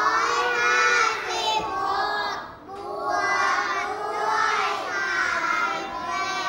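A class of young children reading an addition problem aloud in unison, in the drawn-out, sing-song chant of classroom choral reading, with a short break about halfway.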